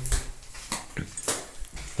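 Footsteps on a hard floor: a few irregular soft knocks about half a second apart, with a brief faint squeak about halfway through.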